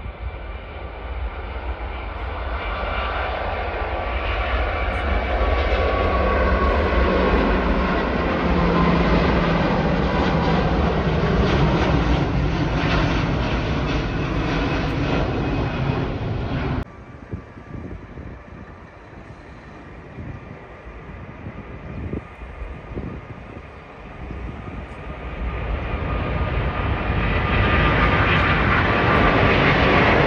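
Four-engine Airbus A380 jet airliner at takeoff power: a deep rumble with a steady whine above it, building as the aircraft rolls and climbs out. The noise cuts off suddenly about two-thirds of the way through, stays quieter for several seconds, then swells again near the end as another A380 takes off.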